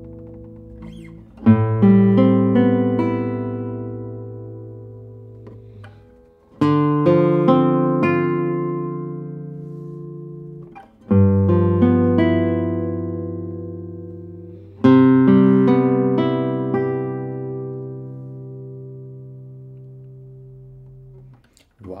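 1967 José Ramírez III 1A classical guitar, cedar top with Brazilian rosewood back and sides, played fingerstyle: four full chords, each followed by a few quick notes and left to ring and fade slowly, the last dying away over about six seconds.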